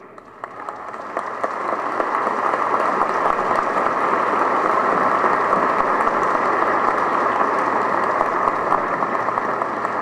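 Audience applauding, building up over the first couple of seconds and then holding steady before easing slightly near the end.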